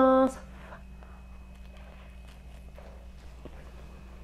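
A person chewing a mouthful of soft, warm bread, heard faintly as small, scattered mouth clicks over a low steady room hum.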